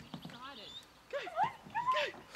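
A dog whining: a few short, high-pitched whines that rise and fall, starting about a second in.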